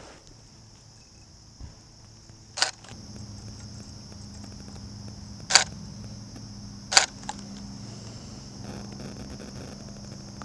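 Camera shutter firing three times, each a sharp click, a second and a half to three seconds apart, as portrait frames are taken. Under the clicks runs a steady high insect drone.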